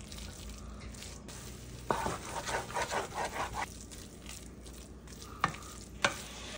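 Wooden spoon stirring and scraping tomato paste through softened onions, bell pepper and celery in an aluminum pot, over a faint sizzle as the paste browns. There is a knock of the spoon about two seconds in, a quick run of scraping strokes, and another knock near the end.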